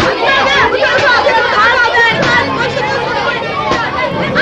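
Many children's high voices shouting and calling over one another in a continuous babble during a game of football.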